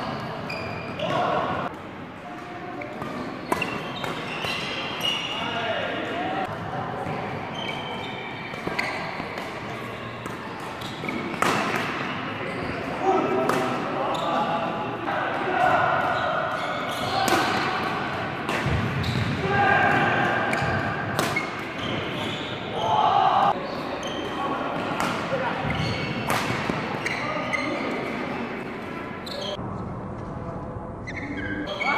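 Badminton play in a large indoor hall: repeated sharp racket strikes on the shuttlecock and players' voices and calls, with the echo of the hall.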